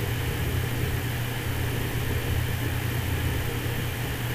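Steady low hum with an even hiss underneath, constant throughout: the background noise of the recording microphone.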